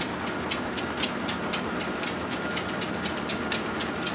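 Horizon treadmill running with a steady motor hum and faint whine, and a dog's paws striking the moving belt in quick, slightly uneven footfalls, several a second. The belt is set to 3.0, a pace the dog is struggling to keep up with.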